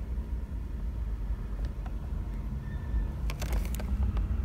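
A low steady rumble, with a few short crackles of plastic packaging being handled near the end.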